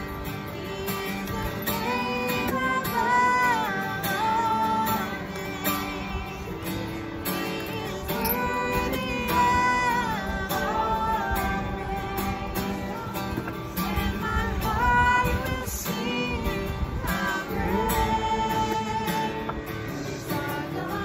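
Acoustic guitar strummed steadily, accompanying voices singing a song.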